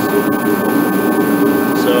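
Craftsman torpedo-style forced-air kerosene heater running: a steady, even rushing noise from its fan and burner, with a couple of faint steady tones on top.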